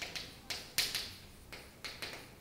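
Chalk writing on a chalkboard: a few sharp taps as the chalk strikes the board, each followed by a short scratchy stroke.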